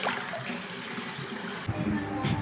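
Swimming-pool water splashing and lapping as a swimmer pushes off through it. It cuts off suddenly near the end, giving way to a low outdoor background.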